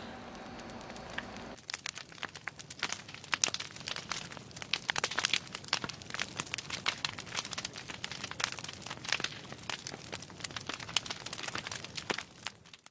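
A steady low room hum for about a second and a half, then dense, irregular crackling made of many sharp clicks that goes on without a break.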